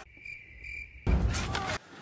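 A high, steady, cricket-like trill for about a second in otherwise near quiet, cut off suddenly by a loud rushing burst of noise with a deep low end that lasts under a second.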